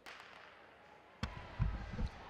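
Starter's gun fired to start a 60 m sprint heat, a single sharp crack echoing around an indoor arena, followed about a second later by a few heavy low thuds.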